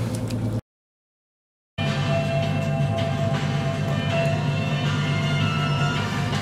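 Radio music from the boat's FM stereo playing over a steady low engine hum. The sound cuts out to silence for about a second shortly after the start, then resumes.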